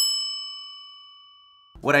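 A single bell-like ding sound effect: one strike with several ringing overtones that fade out steadily over nearly two seconds.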